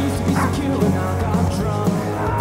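Background rock music with a steady beat and a few short sliding high notes.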